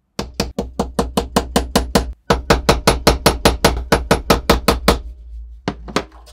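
Steel hammer rapidly striking a metal rod clamped in a bench vise, about five blows a second, bending it into a hook. There is a brief pause about two seconds in and one last blow near the end.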